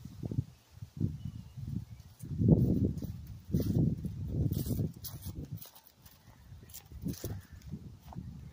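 Footsteps of a person walking over grass strewn with dry leaves, coming closer: irregular low thuds and rustling, loudest about halfway through.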